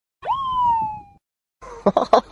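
A single whistle-like tone sweeps up sharply, then slides slowly down for about a second and stops. After a brief silence, a man starts laughing near the end.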